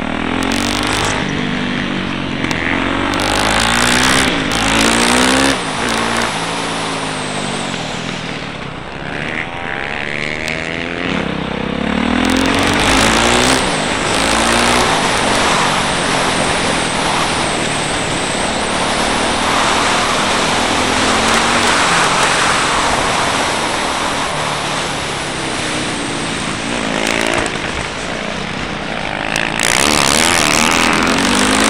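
Yamaha YZ450F's 450cc single-cylinder four-stroke engine, heard onboard, revving up and dropping back again and again as the bike is ridden hard on and off the throttle through corners. Several short gusts of rushing wind noise sweep over the microphone.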